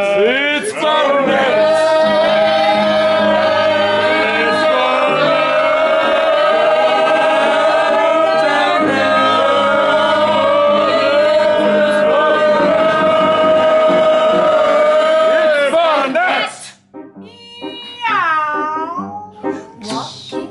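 A group of people singing together in a long held chorus without words, over piano chords. The chorus breaks off about three quarters of the way through, and near the end a single voice slides up and down in pitch over the piano.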